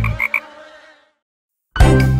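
Three quick cartoon frog croaks over the fading last chord of a children's song, then a short silence, then the next song's music starts suddenly and loudly near the end.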